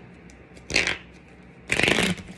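A tarot deck being shuffled by hand: two short bursts of riffling cards, the second about a second after the first and a little longer.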